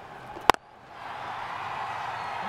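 Cricket bat striking the ball once, a single sharp crack about half a second in, as the batter hits the ball for six. After it, a hiss of background noise rises.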